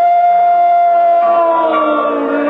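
Church congregation singing a hymn, holding one long note that sags slightly in pitch while a second note joins partway through, heard through a muffled, narrow-band 1950s recording.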